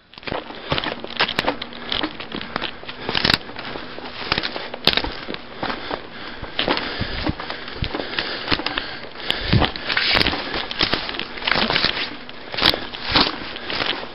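Footsteps pushing through dry brush and logging slash, with twigs and branches crackling and snapping underfoot in a dense, irregular run of sharp cracks.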